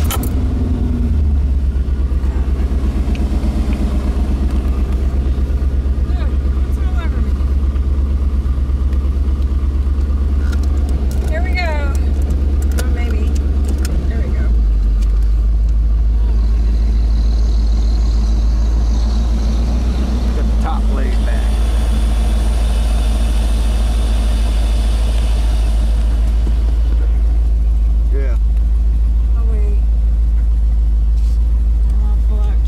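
1990 Chevrolet Corvette's V8 engine running with a pulsing low exhaust note, heard from the open convertible cabin; about halfway through the low note drops deeper as the car moves off slowly.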